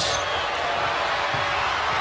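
Steady noise of a large basketball arena crowd during live play.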